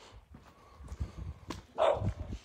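A French Bulldog gives one short, loud bark near the end, over scattered low thumps.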